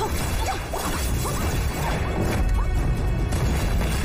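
Film sound effects of magic energy blasts clashing and striking, layered over the score music, with a heavy low rumble throughout.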